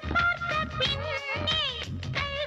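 Tamil film song music: a high melodic line that bends and wavers in pitch runs over the band's steady low accompaniment, with no words sung.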